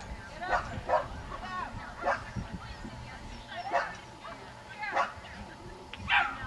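Dogs yipping and barking in short, separate calls, about six over a few seconds.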